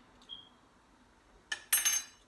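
A light tap with a short ring, then about a second and a half later a sharp metallic clink that rings on briefly: a metal spoon knocking against the soup saucepan.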